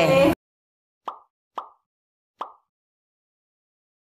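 Devotional singing with percussion cuts off abruptly right at the start. After a second of silence come three short pop sound effects from a like-comment-subscribe end-screen animation, the second half a second after the first and the third nearly a second later.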